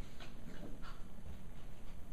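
Pembroke Welsh Corgis play-wrestling, with a few short high whimpers in the first second.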